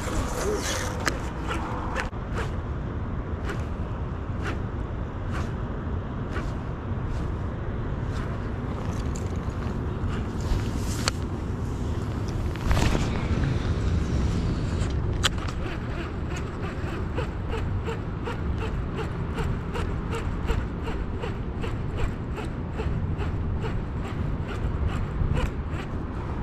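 A baitcasting fishing reel being cranked, its clicks coming quickly and evenly, about three or four a second, through the second half. Under it is a steady low rush of wind on the microphone.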